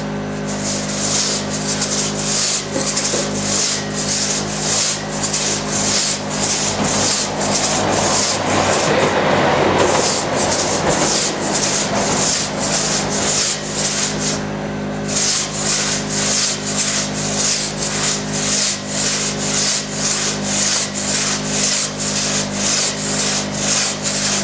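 Single-man crosscut saw rasping through a thick log, each push and pull stroke cutting in a fast, even rhythm of about two strokes a second.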